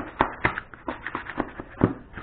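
Irregular crackling and tapping of a plastic ATV body panel and peeled-off vinyl stickers being handled and crumpled in gloved hands, with a few sharper clicks near the start and near the end.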